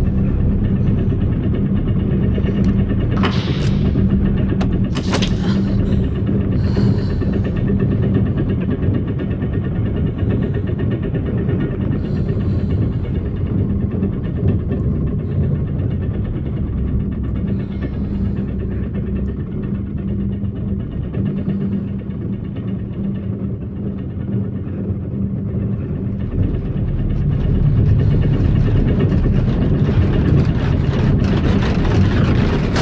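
Film sound effects of a shaking capsule: a loud, deep, steady rumble with a constant hum underneath. Two sharp metallic clicks come about 3 and 5 seconds in, and the rumble grows louder near the end.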